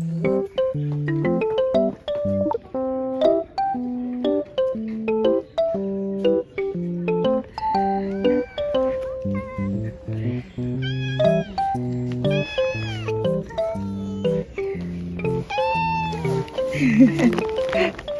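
Background music with a soft, steady beat throughout. From about ten seconds in, a cat meows several times over it, each call rising and then falling.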